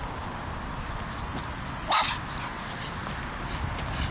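Griffon Bruxellois dog giving one short bark about halfway through.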